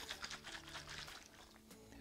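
Faint sloshing of liquid, sugar and citrus peels as a glass Kilner jar is shaken and swirled, dying away towards the end, under quiet background music.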